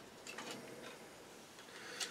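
A few faint light clicks and rubbing from plastic model-kit parts being handled, mostly in the first half, over quiet room tone.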